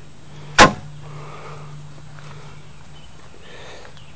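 A single sharp knock about half a second in, over a steady low hum.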